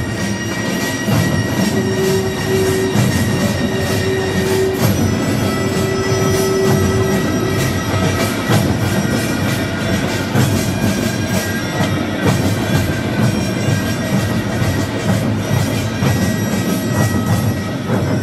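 Korean traditional percussion music in pungmul style: fast, steady drumming with clanging, ringing metal gongs, and a long held note in the first half.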